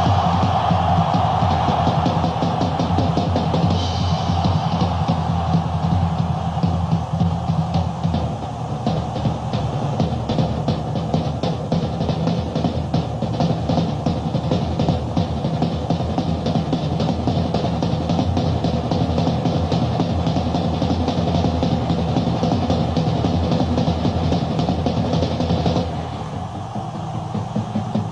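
Rock drum kit played hard and live, a dense run of rapid stick strokes over a steady low drone. The level drops about two seconds before the end.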